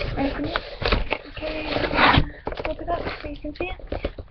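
A woman's voice speaking while a cardboard box is opened and its plastic-wrapped contents are handled, with a burst of rustling about two seconds in.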